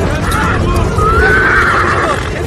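A horse whinnying: one wavering high call through the second second, over a dense low rumble.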